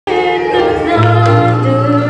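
A woman singing into a microphone over instrumental accompaniment, with a steady low bass note held from about a second in.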